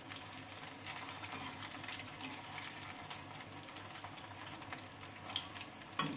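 Soya chaap pieces shallow-frying in hot oil in a kadhai, a steady sizzle full of fine crackles, with a few light taps as a perforated metal spatula turns them.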